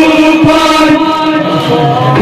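Men's voices chanting a Kashmiri noha, a Shia mourning lament, in long held notes.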